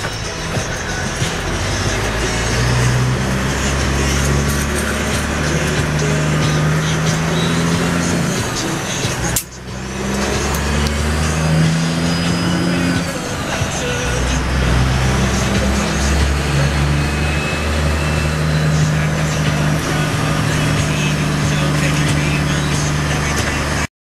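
Caterpillar diesel of a straight-piped Kenworth W900L, heard from inside the cab, pulling through the gears under a manual shift: the engine note climbs in each gear and drops at each upshift, with a brief lull about nine and a half seconds in.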